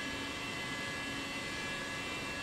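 A steady hum with a few high, even tones over a faint hiss, unchanging throughout.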